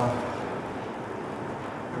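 Steady background room noise with no distinct event: an even hiss-like hum of a large room.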